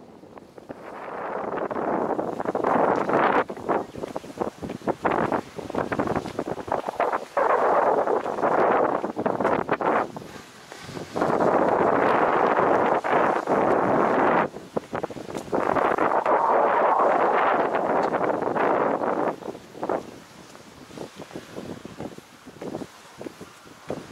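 Wind buffeting the camera's microphone in long, loud gusts of several seconds each, with brief lulls in between, dying down near the end.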